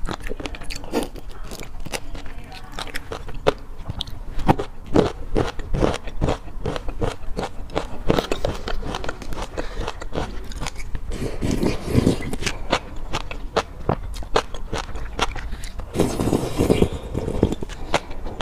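Close-miked mouth sounds of eating shrimp and fish roe: wet chewing with many small clicks and crunches. In the second half, a silicone spatula scrapes chili sauce and roe across a ceramic plate.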